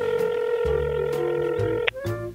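Telephone ringing tone: one steady electronic tone held for about two seconds, then cut off, with background music underneath.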